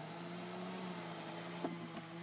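Small electric motor of the BMW 745Li's power rear side-window sunshade, humming steadily as the mesh shade moves, with a faint click near the end.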